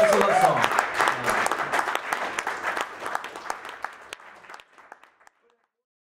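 Audience applauding at the end of a live acoustic song. The clapping thins out and fades over about four seconds, then the sound cuts off.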